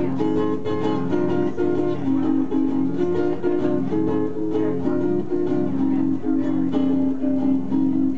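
Acoustic guitar strummed in a steady rhythm, an instrumental passage with no singing.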